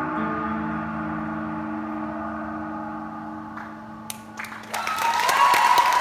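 The band's final chord rings out and slowly fades. Near the end, audience applause and cheering break out and grow louder.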